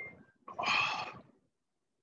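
A short click, then about half a second in a throaty, breathy vocal sound from a man, lasting about a second, after a sip of water.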